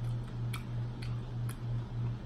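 A low hum that throbs about five times a second, with faint sharp ticks roughly every half second to a second.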